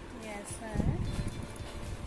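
A short wordless voice sound, then rustling and soft knocks as a fabric school backpack is handled and turned.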